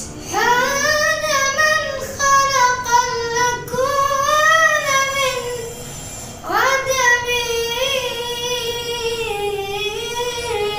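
A boy singing a nasheed solo, unaccompanied, in long held notes that waver and bend in pitch. He breaks off briefly about five and a half seconds in, then comes back in on a rising note.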